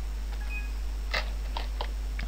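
Steady low electrical hum on the recording, with a few short soft clicks in the second half and two brief faint high tones near the start.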